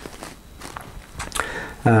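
A pause in a man's talk: low room noise with a few faint clicks, then his voice starts again with an 'um' near the end.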